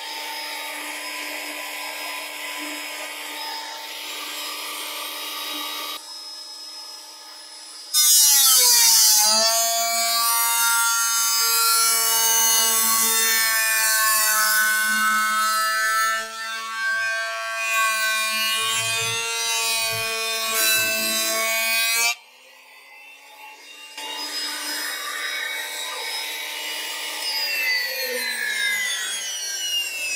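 Delta 12-inch portable planer running with its dust-collector suction. About eight seconds in, a board feeds through and the cut makes it much louder: the motor's whine dips in pitch under the load, then holds steady for about fourteen seconds before the pass ends. After a short drop it runs again more quietly, its pitch falling near the end. It is loud enough to rattle your ear bones.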